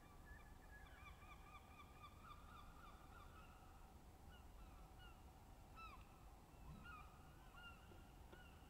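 Faint bird calls over low steady background noise: a quick run of short pitched calls in the first few seconds, then scattered single calls.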